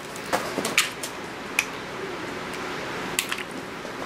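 A few light, sharp clicks and taps of small craft items being handled, over low room noise.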